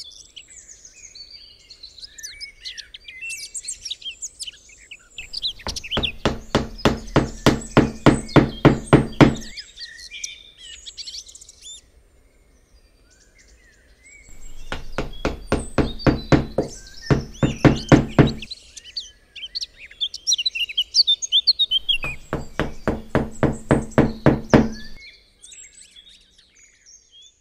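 Three runs of rapid, even knocking, about five knocks a second, each lasting three to four seconds, with birds chirping in the gaps and over the knocking.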